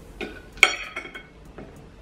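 Metal forks and knives clinking against ceramic plates, a few light clinks with the sharpest about half a second in.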